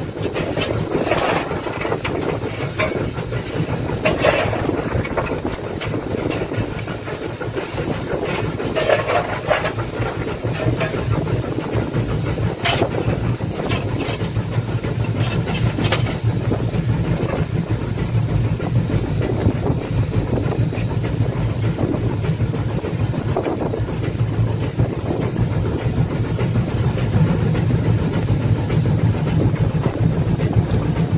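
Haine-Saint-Pierre steam locomotive running along the line: a steady rush of steam hiss and running noise, with a few sharp clicks from the wheels over the rails in the first half.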